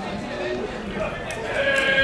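Men shouting during a football match: a few short calls, then a long drawn-out shout starting about three-quarters of the way in.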